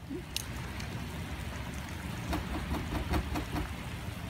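Steady wind rumble on an outdoor microphone, with a few faint footsteps on wooden steps in the second half.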